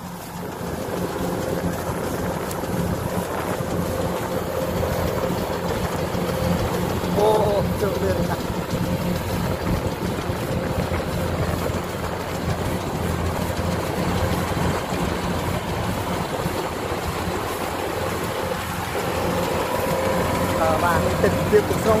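Kubota DC-105X rice combine harvester running under load as it cuts and threshes, its diesel engine giving a steady drone with a steady mechanical whine above it. The sound grows louder about a second in.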